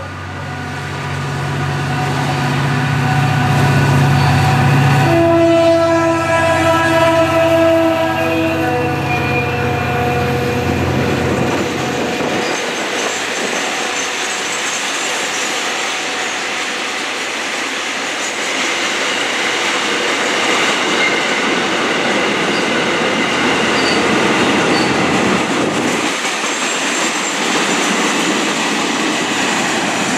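FEPASA diesel locomotive D2363 approaching and passing under power, its engine a low drone, sounding a multi-tone horn that is strongest about five to nine seconds in. Then a long train of loaded container flatcars rolls past with steady wheel-on-rail noise, clatter over the rail joints and some high-pitched wheel squeal.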